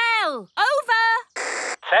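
Cartoon dialogue spoken over a walkie-talkie, the voice band-limited like a radio. A short burst of radio static hiss comes about one and a half seconds in, before the talk resumes.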